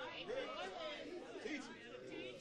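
Congregation members murmuring and calling out responses, faint overlapping voices.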